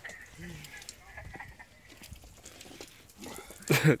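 Mostly a quiet stretch of faint background sound, then a person bursts out laughing near the end.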